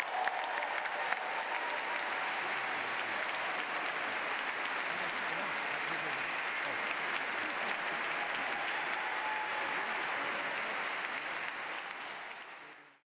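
Large audience applauding steadily, the applause beginning to die away near the end.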